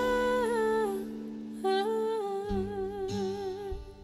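A woman singing two long held notes into a microphone, the second wavering with vibrato, over a quiet guitar accompaniment.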